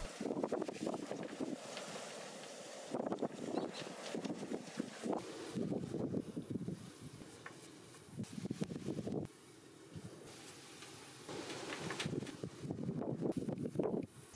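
Faint, irregular brushing and rustling: a paintbrush working paint onto black iron gas pipe fittings. The sound drops away briefly about nine seconds in.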